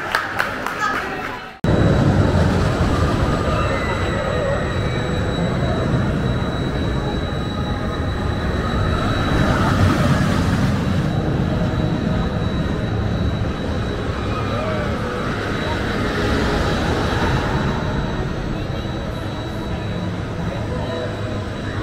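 Crowd chatter in a ride queue cuts off abruptly a second and a half in. A spinning amusement-park flat ride then runs with a steady low rumbling machine noise, a faint constant high tone, and swells in level as it turns.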